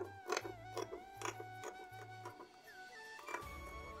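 Background music with a steady beat and a repeating bass line; about three and a half seconds in it moves into a new phrase with a different bass pattern.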